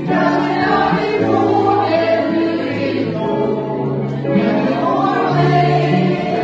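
Music with a choir singing, the voices coming in together right at the start over held chords.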